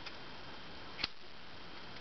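Quiet room hiss with a single short click about halfway through.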